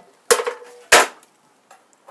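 Two sharp knocks about two-thirds of a second apart, the first with a brief metallic ring, as a small bench belt sander is handled and opened to get at the metal grinding dust collected inside.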